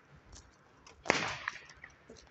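A single loud, sharp crack about a second in, dying away over a fraction of a second, with a few faint clicks around it.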